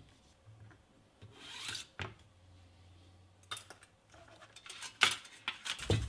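Hands handling a plastic filament-welding clamp and its 3D-printed fixture: a soft rubbing sound about a second in, then scattered light clicks and taps, several near the end.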